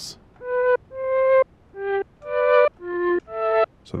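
Mellotron flute samples played on the Mellotron engine of a Critter & Guitari 201 Pocket Piano synth: a slow phrase of six separate notes, each swelling in softly.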